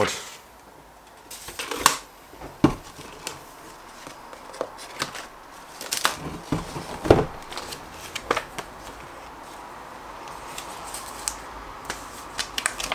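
Cardboard motherboard box and its paper contents being handled: irregular rustles, paper flaps and sharp knocks as the box is opened and the sheets and manual are lifted out.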